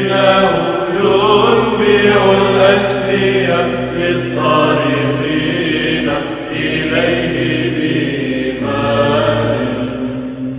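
Byzantine Orthodox chant: a sung melody in long phrases over a steady held drone, the ison, with brief breaks between phrases.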